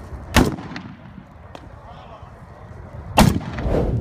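Two loud gunshots, one just under half a second in and one near the end, each followed by a rumbling echo that dies away.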